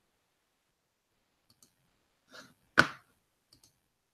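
Computer mouse clicking: a few faint clicks, then one sharper click a little under three seconds in, with near silence between.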